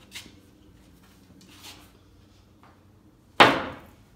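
A pool cue striking the cue ball with a light click just after the start, then about three and a half seconds in a single loud, sharp knock that rings briefly.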